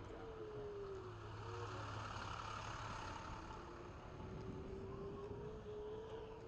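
Onewheel V1 hub motor whining as it rolls on pavement, its pitch sinking over the first couple of seconds and climbing again in the second half as the board slows and speeds up. Under it runs the steady noise of street traffic and the tyre on the road.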